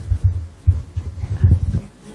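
Microphone handling noise: a run of low, irregular thumps and rumbles as a handheld microphone is picked up and moved.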